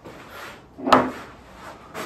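A single sharp click-knock about a second in, with fainter rubbing before and after: a whiteboard marker being handled at the board.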